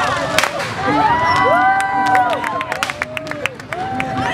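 Fireworks and firecrackers cracking in a rapid run of sharp reports, thickest in the middle, over a crowd of voices calling and cheering.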